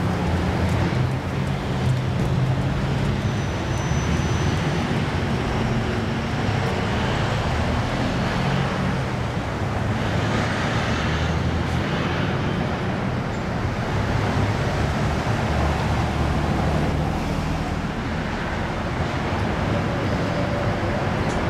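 Steady road traffic: passing vehicles with a continuous low engine rumble.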